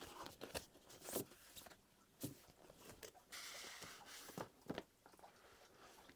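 Faint rustling and light taps of large stiff art prints being handled and shifted, with a brief soft paper slide in the middle.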